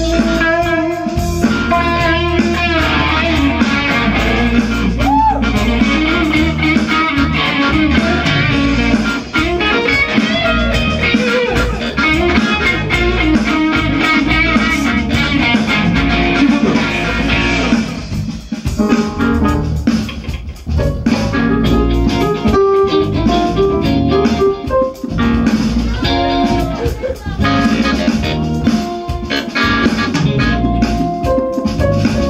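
Live band playing: an electric guitar takes a solo over bass guitar and a Roland electronic drum kit.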